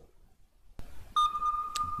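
Sonar-style sound effect: after a moment of silence, a single steady electronic tone starts just over a second in and holds, with a short click partway through.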